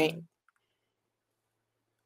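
A spoken word cut short, then one faint click about half a second in, followed by near silence.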